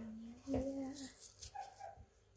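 Short whining vocal sounds: a held note at the start, a slightly higher one about half a second in, then a few fainter short whines.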